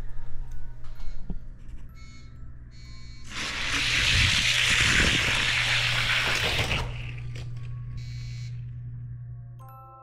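Four die-cast Hot Wheels cars rolling down an orange plastic drag track, heard as a loud rushing rattle from about three to seven seconds in, over a steady low hum.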